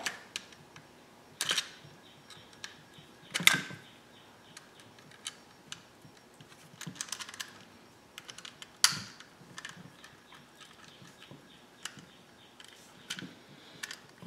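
Scattered sharp clicks and short rattles of a plastic 240-volt NEMA 6-50 receptacle and its metal electrical box being handled as heavy-gauge wires are fitted into the receptacle's terminals. The loudest knocks come a second and a half in, about three and a half seconds in and about nine seconds in, with a quick run of small clicks around seven seconds.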